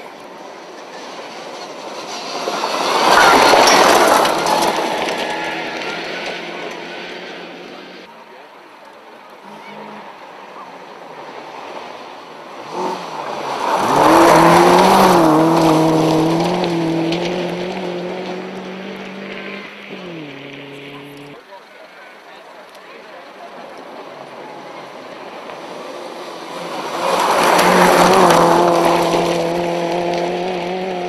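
Three rally cars pass at speed one after another, each engine rising to a loud peak as it goes by and then fading away. On the second car the engine pitch steps up and down as it changes gear.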